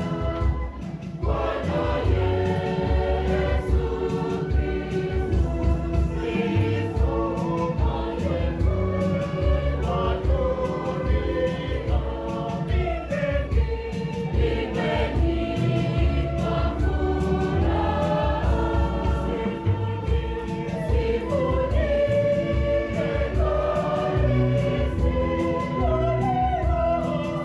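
Church choir singing a hymn with instrumental backing and a steady bass beat.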